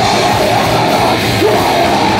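Hardcore punk band playing live at full volume: distorted electric guitar and drum kit driving on, with a yelled lead vocal into the microphone.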